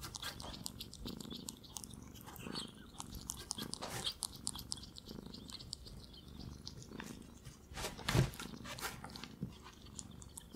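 Close-miked ferret chewing and licking coconut, with a run of wet mouth clicks and smacks. A louder bump sounds about eight seconds in.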